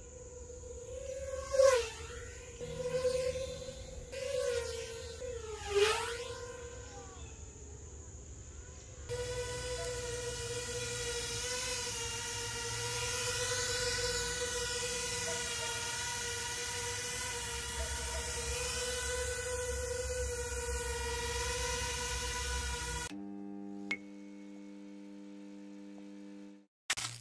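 Small toothpick FPV quadcopter's brushless motors and propellers whining (BetaFPV HX115 frame with Flywoo Robo 1202.5 motors): in the first several seconds the pitch dips sharply twice as it passes close by, then settles into a steady, louder high whine while it sits on the ground with its props spinning. Near the end it gives way to a short electronic logo sting of a few low steady tones.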